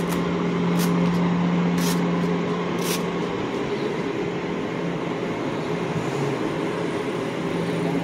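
City street traffic noise with a steady low hum, and three short hisses about a second apart in the first three seconds.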